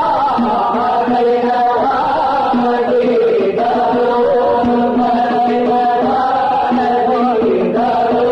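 Arabic religious nasheed in the Aleppo style: a male voice sings a wavering, ornamented melodic line over a lower note that sounds again and again beneath it.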